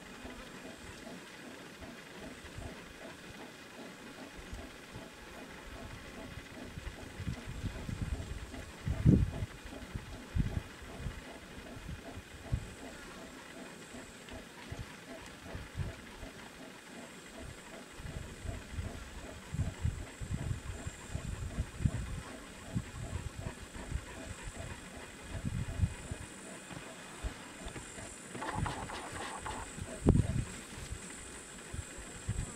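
Outdoor bush ambience: irregular low rumbles of wind buffeting the microphone over a faint, steady high-pitched insect drone. A murmur of low voices comes in near the end.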